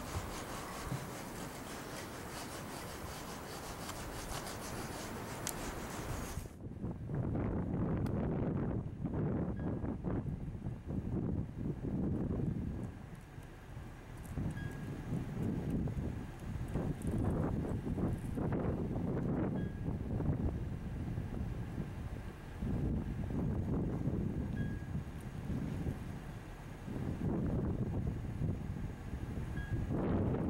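A steady hiss that cuts off abruptly about six seconds in, followed by wind buffeting the microphone in uneven low gusts.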